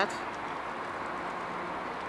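Tesla Model S creeping slowly under Smart Summon, heard as a faint steady low hum over a steady outdoor background noise.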